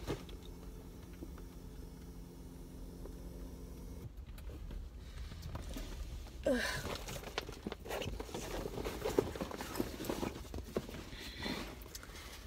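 A backpack and handbag being handled and pulled on inside a car: straps and fabric rustling, with light knocks and clicks, busiest in the second half. A steady low hum runs through the first four seconds.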